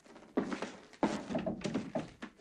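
Slow, heavy footsteps on a hard floor in an echoing room: about four thuds, roughly half a second apart.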